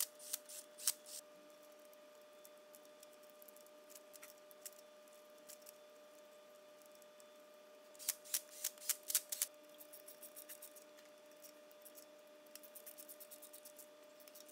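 Faint clicking from a cordless driver running down the rocker arm bolts on a GM 3800 V6 cylinder head: short runs of quick clicks near the start, again about eight seconds in, and a rapid even run near the end, over a faint steady hum.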